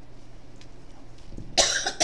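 A person coughing once, short and loud, near the end, over quiet room tone.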